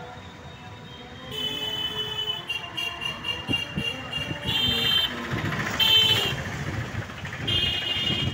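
Busy street traffic with repeated high-pitched vehicle horn honks. The honks start about a second in, some as quick short beeps and several as longer blasts, over a low traffic rumble.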